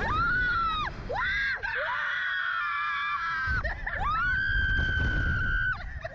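Two girls screaming on a SlingShot reverse-bungee ride: a run of high screams, several short ones and then one held for about two seconds, over wind rumbling on the microphone.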